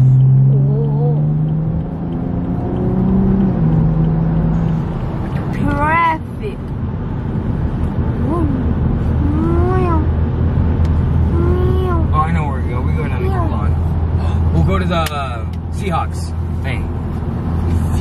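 Tuned BMW M235i's turbocharged straight-six accelerating hard, its pitch rising for about three seconds, then dropping at an upshift, then settling into a steady low drone at cruising speed, heard from inside the cabin. Short voice exclamations come in a few times over the engine.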